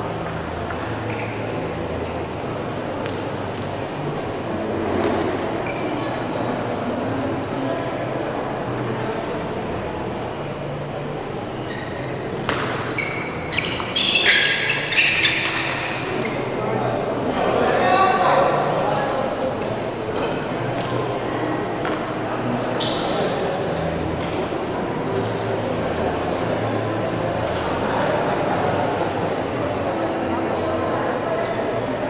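Table tennis rallies: a celluloid ball clicks sharply off rackets and the table, with the densest run of hits about twelve to sixteen seconds in. Voices murmur in the background of a large, echoing hall.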